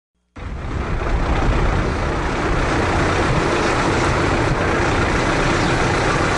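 Steady engine and road noise of a moving bus, a loud even rumble with a faint hum, cutting in abruptly just after the start.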